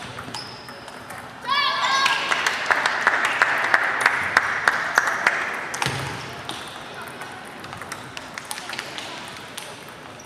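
Table tennis balls clicking off bats and tables in a large hall, many quick irregular clicks from several tables at once, busiest in the first half. A short squeak comes about a second and a half in, over indistinct voices.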